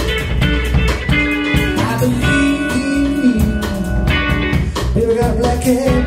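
Live electric blues from a guitar, bass and drum trio, with a male voice singing over the band.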